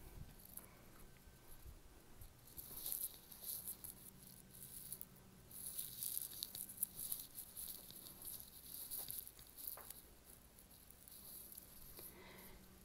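Faint, irregular rustling and soft pattering from someone walking across a carpeted room with a handheld phone: footfalls and handling rustle. A faint steady low hum runs underneath.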